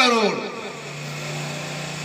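A man's voice trails off at the start, then a pause holds a steady low hum with faint background noise.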